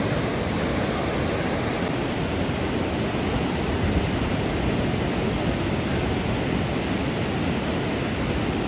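Steady rush of ocean surf breaking and washing up the beach, an even hiss with no distinct wave crashes standing out.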